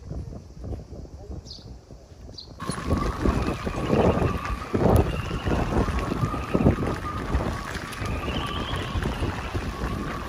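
Wind on the microphone, quieter for the first couple of seconds, then from a sudden change about two and a half seconds in, strong typhoon gusts of about 25–30 knots buffeting the microphone, with a steady high whistle running over them.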